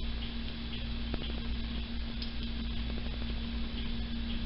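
Steady low hum of room background noise, with a few faint clicks.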